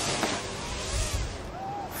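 Rushing scrape of a snowboard riding the hard-packed snow of the halfpipe.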